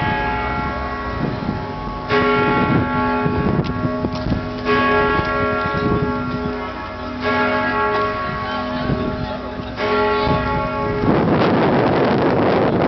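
Lausanne Cathedral's church bells ringing, a fresh stroke coming about every two and a half seconds, each stroke ringing on with many overtones. Near the end a loud rush of noise sweeps over the bells.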